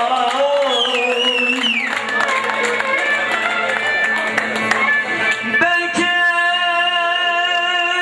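Live Şanlıurfa folk music in uzun hava style: a free-rhythm melody with a male voice and instruments. It opens with a wavering, ornamented line and settles into a long held note a little past the middle.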